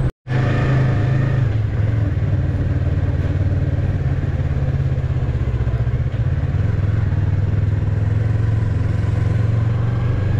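Yamaha MT-03 motorcycle's parallel-twin engine running steadily at low road speed, heard from the rider's seat, after a brief cut-out of all sound right at the start.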